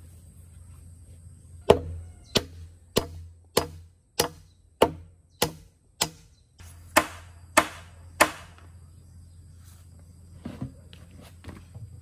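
Hand hammer driving a nail into a round wooden log beam: eleven sharp, evenly paced blows about 0.6 s apart, each ringing briefly, then a few lighter taps near the end.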